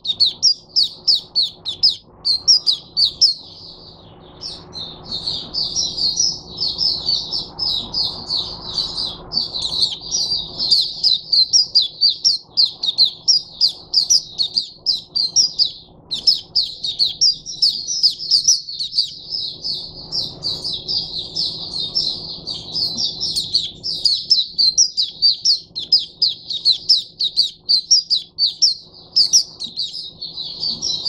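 White-eye singing a long, fast, high-pitched twittering song of rapid chirps, broken by short pauses about four seconds in and again around sixteen seconds.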